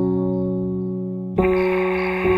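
Slow, soft piano music: a held chord slowly fading, then a new chord struck about a second and a half in.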